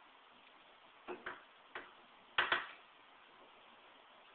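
Wooden structure under a heavy load, about 170 pounds, ticking and creaking: a handful of short sharp clicks, a pair about a second in, another just after, and the loudest double about two and a half seconds in.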